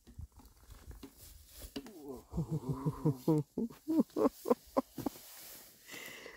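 A person laughing: a drawn-out voiced laugh that breaks into short rhythmic pulses, about three a second, then fades.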